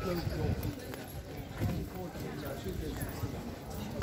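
Footsteps knocking on stone paving while walking, with indistinct voices of a crowd of pedestrians around.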